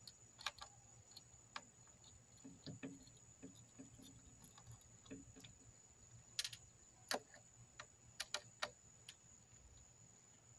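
Faint, scattered clicks and ticks of a hand screwdriver working screws out of a solar panel's plastic frame, with a few sharper clicks in the second half.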